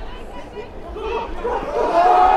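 Sideline voices of players and onlookers chattering and calling out, dipping about half a second in and then building into louder shouts near the end as a long run develops.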